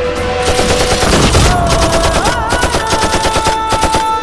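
Rapid automatic rifle fire, a long run of quick shots starting about half a second in and stopping just before the end, over a held musical note.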